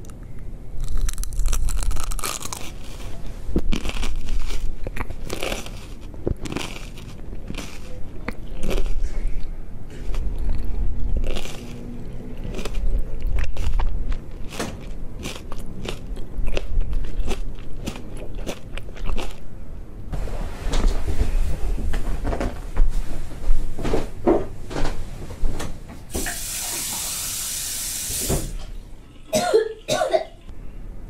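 Close-miked chewing of a raw red chili pepper: many short crunches with wet mouth sounds, thickening about two-thirds of the way in. Near the end comes a loud hiss lasting about two seconds.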